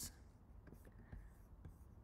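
Near silence: room tone with a low hum and a few faint clicks and taps.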